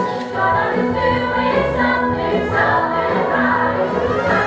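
Musical-theatre song: an ensemble chorus singing together over band accompaniment.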